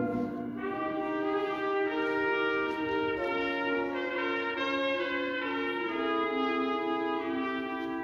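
Wind ensemble playing held chords with brass to the fore, moving from chord to chord every second or so, in a softer passage without the low bass parts.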